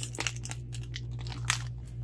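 A few faint crackles and crunches from a plastic bag of frozen broccoli florets being handled, over a steady low hum.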